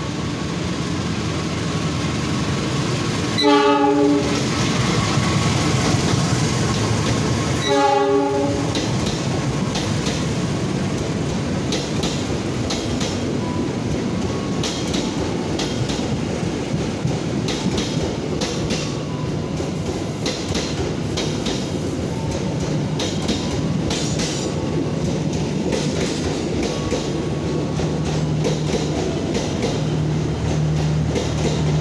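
A KAI diesel locomotive arriving sounds its horn in two short blasts, about four seconds apart. A long passenger train then rolls past, with a steady rumble and the wheels clicking over the rail joints.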